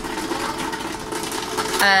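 Steady machine hum with a constant tone under a light haze of noise; a woman starts speaking near the end.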